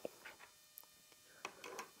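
Near silence with a few faint, brief clicks of plastic toy counters being picked up and handled.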